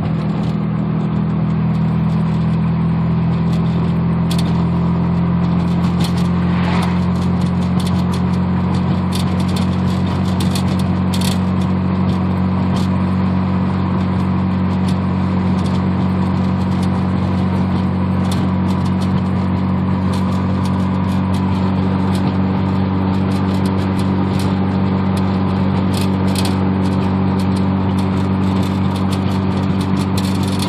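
Mazda RX-7's naturally aspirated 13B twin-rotor rotary engine at a steady cruise through headers and straight pipes, heard from inside the cabin: an even, unchanging low drone. A few light clicks are scattered through it.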